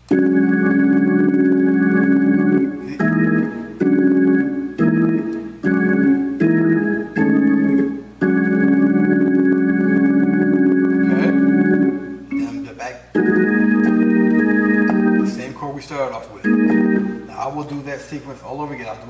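Hammond organ playing a gospel preaching-chord progression in E-flat: a long held chord at the start, a run of short chords, then two more long held chords and a few short ones near the end.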